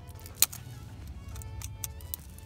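A small wrapped packet of cards being picked open by a child's fingers: one sharp crackle or snap about half a second in, then a few faint ticks and rustles near the end, over a steady low rumble in a car cabin.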